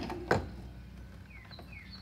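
Two short knocks in the first half-second as the plastic conduit pipe is handled and set in place at the miter saw. A low lull with a few faint bird chirps follows.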